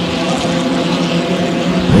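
Racing hydroplane engines running at full speed on the water, a loud steady engine note with no change in pitch.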